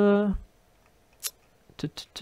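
A held 'euh' trails off, then sharp computer-mouse clicks: one about a second in, then a quicker run near the end.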